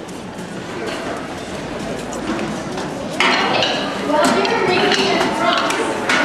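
Chatter of many voices echoing in a large hall, with scattered light clinks and knocks. The voices get louder about three seconds in.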